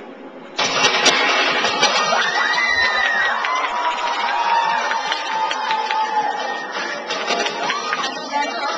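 A loud recorded audio track for a stage skit, noisy and dense with a few faint gliding tones, cuts in suddenly about half a second in and plays on at a steady level.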